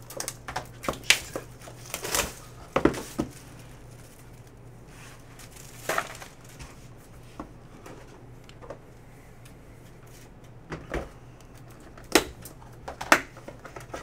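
Scattered clicks, taps and rustles of hands handling and opening sealed trading-card boxes and a wrapped pack. The sounds come in clusters near the start and again near the end, with a quieter stretch in between.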